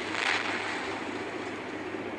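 Steady rumbling noise from an animated explosion and its aftermath, with a brief hissing swell just after the start.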